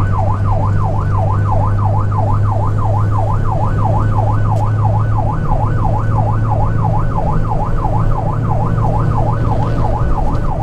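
Electronic siren in fast yelp mode, its pitch sweeping up and down about three times a second, heard from inside a moving truck's cab over the steady drone of the engine and road.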